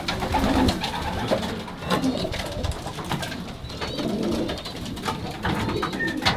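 Racing pigeons cooing in a loft, a low repeated murmur, with scattered light knocks and clicks.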